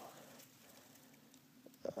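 Near silence: faint outdoor background hiss, with a couple of small clicks near the end.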